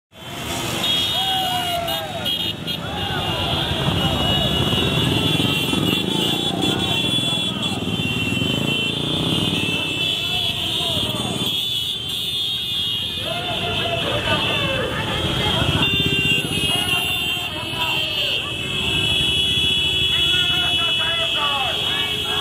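Many motorcycles riding past in a procession: engines running, horns sounding almost without a break, and a crowd of people shouting. The shouting thins out briefly about halfway through.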